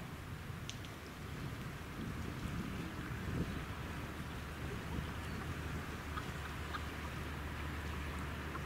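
Wind on the microphone: a steady outdoor hiss with a rough low rumble, and a low steady drone underneath that grows a little stronger about five seconds in.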